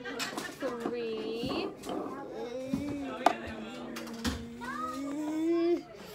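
A young child's drawn-out wordless vocalizing: long held tones that glide slowly, the last one rising a little before it stops near the end. It opens with a laugh, and there is a single sharp click about halfway through.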